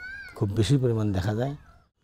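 A man speaking in Bengali in a low voice, with a brief high warbling chirp at the very start. The speech stops shortly before the end.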